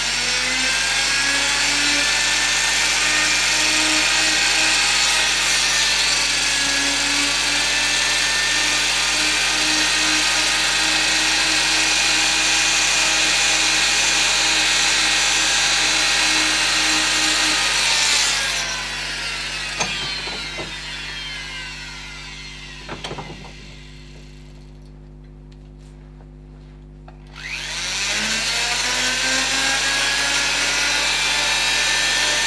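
Flexible-shaft rotary carving tool running at high speed, its bit cutting and shaping the wooden carving. About two-thirds of the way through it is switched off and winds down with a falling whine, then spins up again near the end.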